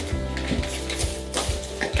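Rustling and crinkling of small items being handled in a handbag, with a few short clicks spread through, over steady background music.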